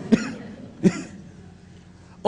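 A man coughing twice, two short coughs under a second apart.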